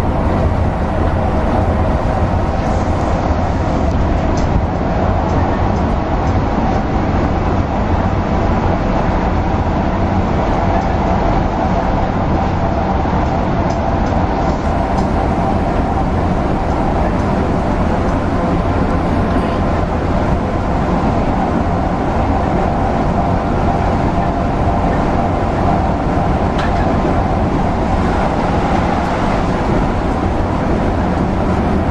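Mercedes-Benz O405NH articulated bus running at speed along a concrete guided busway track, heard from inside at the front: a loud, steady drone of engine and tyre noise.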